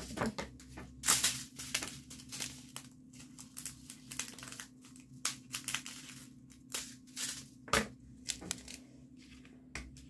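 Plastic being handled during diamond painting: irregular crinkling and rustling with sharp clicks and taps at uneven intervals, loudest about a second in and again near the end.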